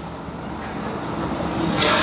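Pause in a spoken talk: a low, steady room rumble that grows slightly louder, with a short hiss near the end as the speaker starts again.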